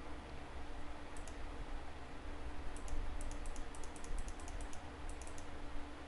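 A run of quick, light clicks at a computer: two about a second in, then a denser string of about ten from roughly three to five and a half seconds in, over a faint steady hum.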